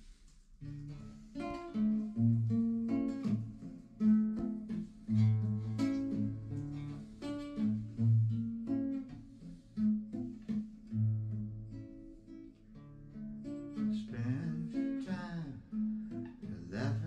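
Solo nylon-string classical guitar, played fingerstyle with sustained bass notes under picked notes, starting about a second in after a brief near-silence.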